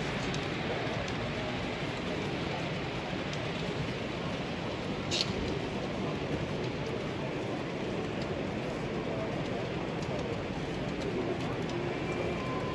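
Steady background hubbub of a busy exhibition hall, with one faint click about five seconds in.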